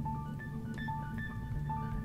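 Quiet background music: slow, sustained keyboard-like notes, a new note about every half second.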